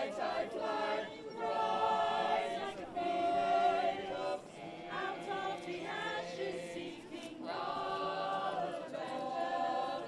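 A choir of men and women singing together in held phrases with short breaks between them.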